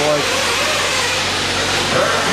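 Several 1/8-scale nitro RC truggies racing on a dirt track, their small engines running together as a steady, dense din.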